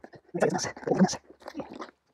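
Putty knife cutting and scraping through cured Dicor lap sealant, in a few short, rough strokes, the first two the loudest.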